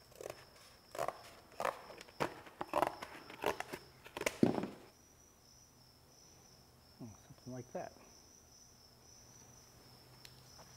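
Scissors cutting through a stiff card template: a run of crisp snips about every half second, stopping about four and a half seconds in.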